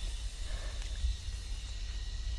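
Low, steady rumble with a faint hiss: background noise on a handheld microphone, with no distinct sound standing out.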